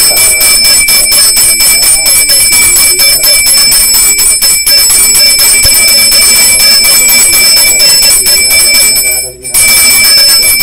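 Puja hand bell (ghanti) rung continuously with fast, even strokes, its bright ringing tones sustained throughout. It stops for a moment near the end, then starts again.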